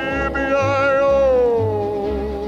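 A Western cowboy song: a singer holds one long note with vibrato that slides down in pitch about halfway through, over a pulsing bass line.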